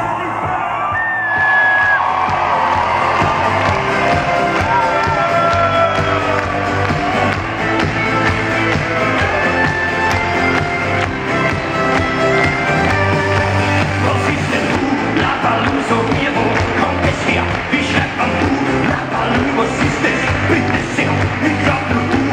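Live acoustic band with orchestra playing a song, a singer's voice and crowd voices over it, heard from among the audience.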